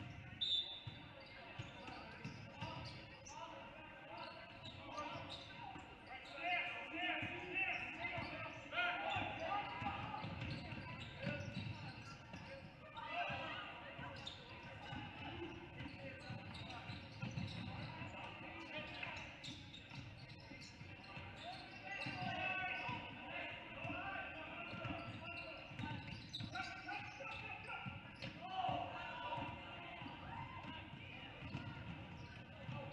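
A basketball dribbling and bouncing on a hardwood gym floor, with indistinct shouts and chatter from players and spectators echoing in the gym.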